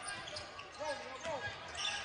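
A basketball being dribbled on a hardwood court, with voices from the arena behind it.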